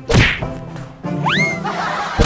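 Comic sound effects over light background music: a swishing whack at the start, then a quick rising whistle glide that levels off a little past a second in.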